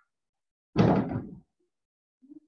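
A single sudden loud bang about three-quarters of a second in, dying away over roughly half a second.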